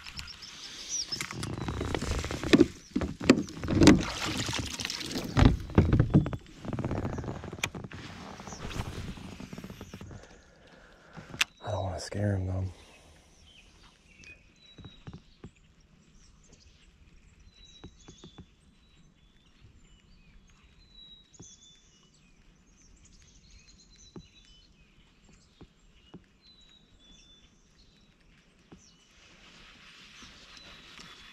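Knocks and rustling of gear moving in a plastic kayak for about the first ten seconds, then a brief mumbled voice. After that it goes quiet, with birds chirping faintly.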